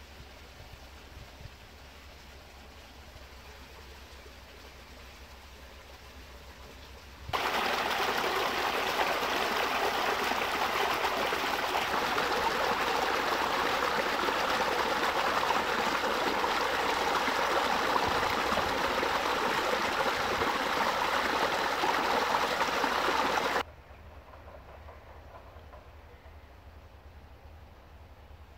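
Brook water trickling faintly. About seven seconds in it gives way abruptly to much louder, steady rushing of water over a small rapid of stones and fallen leaves. That rushing cuts off suddenly near the end.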